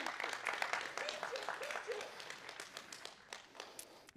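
Congregation applauding, with a few voices calling out in the first couple of seconds. The clapping thins out and fades toward the end.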